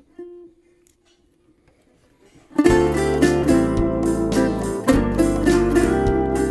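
A faint steady hum with a few small clicks, then about two and a half seconds in a song's instrumental intro starts: strummed guitars over steady bass notes, in a regular rhythm.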